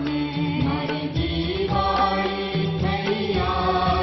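Devotional aarti chanting sung over instrumental music, continuous and loud.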